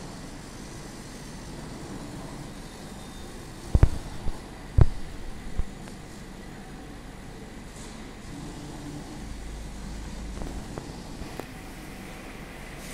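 Laser cutting machine running with a steady mechanical whir as its head travels over the sheet. Four sharp knocks come between about four and six seconds in, the first the loudest.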